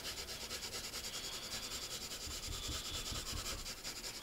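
Colour pencil shading on paper: quick, even back-and-forth strokes of the pencil rubbing across the sheet as a layer of colour is built up.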